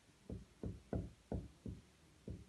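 Marker writing on a whiteboard: five short, low knocks, a little over two a second, as the pen tip strikes the board stroke by stroke.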